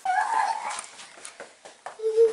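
A toddler's short, high whine in the first second, followed by a few faint knocks.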